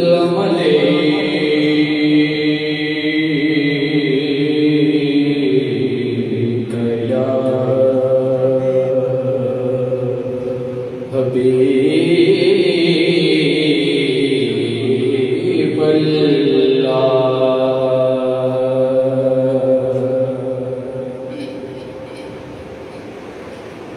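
A man's solo voice singing a Punjabi naat unaccompanied, amplified through a microphone, in long drawn-out melismatic phrases. One phrase ends and a new one begins about halfway through, and the voice trails off near the end.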